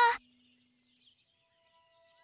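A voice's call ends just after the start, then near silence, with faint steady held tones coming in at about one and a half seconds.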